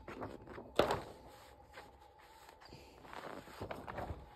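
A large paper poster being handled and refolded, rustling, with one sharp crackle of paper about a second in and a softer rustle near the end.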